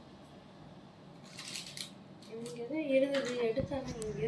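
Quiet room background, then a few brief scratchy, snipping noises about a second and a half in, followed by a person's voice in the second half that is louder than the rest.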